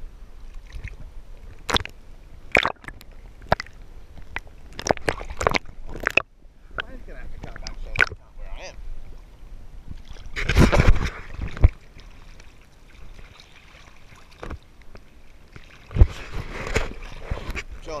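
Sea water sloshing and slapping against a GoPro held at the surface in choppy water, with a run of sharp splashes and two longer, louder washes as waves break over the camera, about ten seconds in and again near the end.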